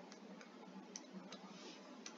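Near silence with a few faint, short ticks of a stylus tapping on a tablet screen while writing.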